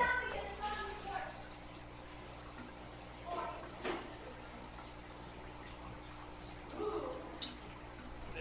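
Aquarium equipment running steadily, a low hum with a light trickle of water, while brief snatches of voices come and go in the background.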